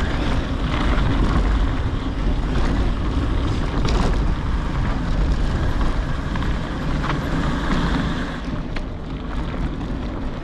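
Wind buffeting the microphone of a fast-moving action camera on a dirt trail: a steady rush with a deep rumble. A few short sharp knocks come through it here and there.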